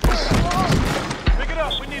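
Several voices shouting during a football drill over a music score with deep booming beats, one hitting right at the start and another about a second and a quarter later.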